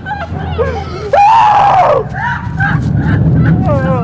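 People screaming and crying out in distress. One long, loud scream about a second in, more cries after it with falling pitch near the end, over a low steady rumble.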